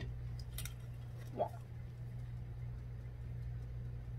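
A steady low hum, with a faint click from a plastic tube cross-stitch frame being turned on its stand.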